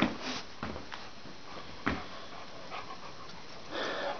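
An elderly dog climbing carpeted stairs with effort: a few soft, irregular thumps of her paws in the first two seconds.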